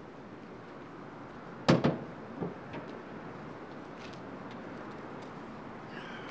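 Two sharp clacks in quick succession about two seconds in, followed by a few fainter clicks over a steady background hiss.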